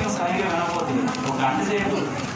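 A man preaching into a handheld microphone, speaking continuously.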